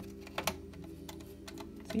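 A few scattered light clicks as a screwdriver drives small Torx screws and the circuit board is pressed down into the sampler's case, over a steady low tone.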